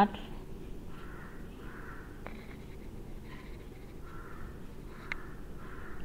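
Faint, soft scratching of a fine-tip Micron 01 pen drawing short strokes on a paper tile, with a couple of small clicks.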